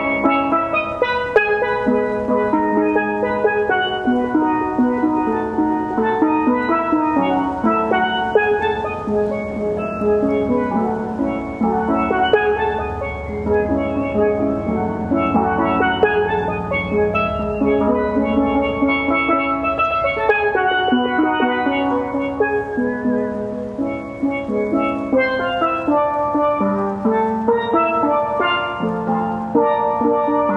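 Steelpan playing a slow melody, its held notes sounded as quick repeated strikes on the same pitch.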